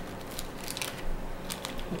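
Light handling noises: a few faint clicks and rustles as small objects are moved about on a tabletop.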